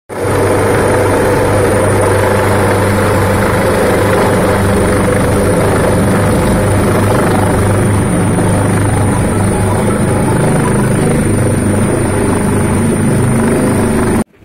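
Helicopter running loud and steady at close range, a dense rotor-and-engine noise with a thin high whine held over it.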